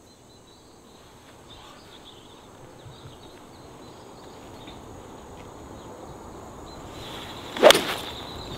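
A 5-iron striking a golf ball off the tee near the end: one sharp crack, after several seconds of faint outdoor background.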